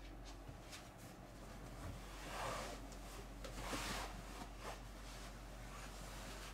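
Faint rustling and shuffling as a person climbs onto a cushioned boat berth, with two soft swells of noise a little past halfway and a few light knocks.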